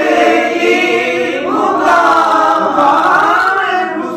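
Men singing a naat without instruments, holding long notes that bend and glide in pitch.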